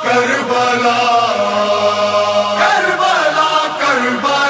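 Wordless chanted vocal chorus over a held vocal drone: the a cappella backing of a Muharram noha, with voices gliding between held notes.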